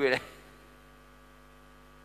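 A man's spoken word cuts off just after the start, leaving a faint, steady electrical mains hum from the church sound system, a stack of even tones.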